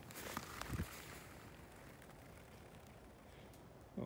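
Rustling and a few light knocks from a handheld phone being swung around during a throw, with a dull thump just under a second in. After that there is only faint outdoor quiet.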